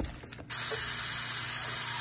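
Homemade ground pork sausage patties sizzling in a cast iron skillet: a steady hiss that starts abruptly about half a second in.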